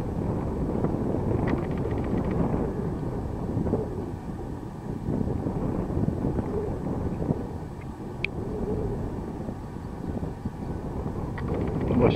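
Wind buffeting the microphone: an uneven, gusting low rumble with no steady pitch.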